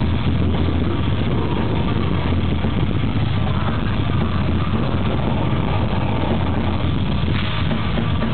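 Black metal band playing live at full volume: a dense, unbroken wall of distorted guitars and fast drumming.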